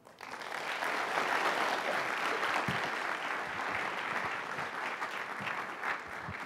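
Audience applauding at the end of a talk. The clapping swells within the first second, then holds steady and thins a little near the end.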